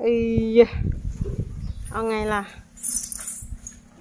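A woman's voice, first a drawn-out "oh" and then a short phrase about two seconds in, with low rumbling noise between them and a brief hiss near the end.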